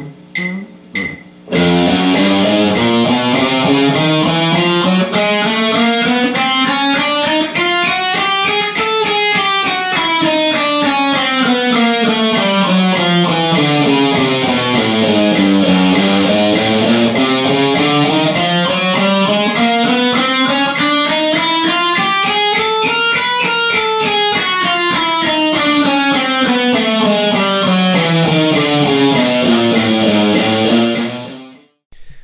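Electric guitar playing alternate-picked single notes in an even eighth-note stream at 100 beats per minute, each note a fret higher than the last. The pitch rises steadily, comes back down, then rises and falls once more. A few short clicks come just before the playing starts.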